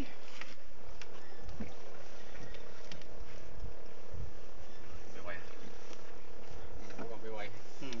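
A small fishing boat's engine running steadily, a constant hum with wind and water noise; a voice comes in near the end.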